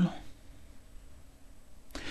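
A pause in spoken narration: the end of a word at the very start, then faint room tone, and a short click just before the voice resumes near the end.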